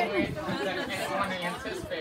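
Overlapping chatter of several onlookers' voices, no single speaker standing out.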